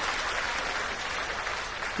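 Darts audience applauding a big score, a dense, even clapping that eases off slightly toward the end.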